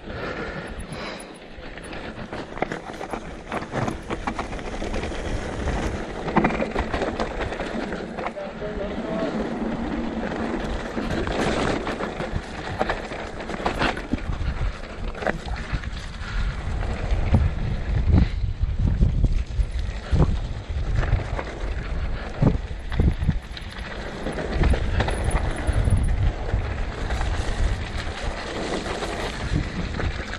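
Mountain bike descending a rocky trail at speed: tyres rolling and crunching over rock and dirt, with frequent knocks and rattles from the bike, and wind buffeting the microphone. The low rumble grows heavier in the second half.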